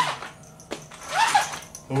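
A domestic cat meowing once, about a second in: a short call that rises and falls twice.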